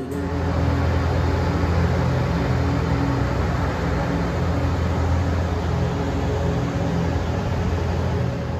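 Ice resurfacer running steadily on an arena rink: a constant low engine hum with a hiss over it.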